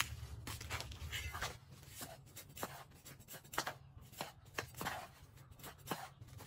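Dry sand and cement being stirred by a gloved hand in a plastic basin: a series of irregular, gritty scrapes.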